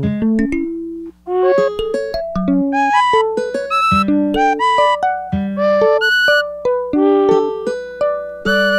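Chords played on a MIDI keyboard through Ableton's Sampler, with round robin set to random, so each note triggers a different one of the sampled instruments: acoustic guitar, wood flute, kalimba, voice and fretless bass. The notes come in an unbroken run of plucked and sung tones, with a brief gap about a second in.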